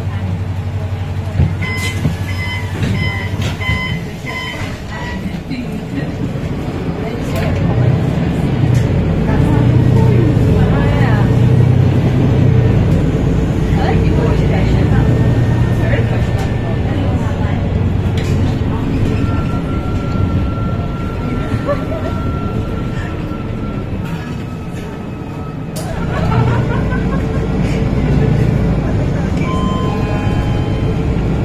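Inside a Euro 6 MAN NL323F bus, its MAN D2066 diesel engine and ZF EcoLife automatic gearbox running under way, the drivetrain note rising and falling several times as the bus gathers and changes speed. A short run of repeated electronic beeps sounds a couple of seconds in.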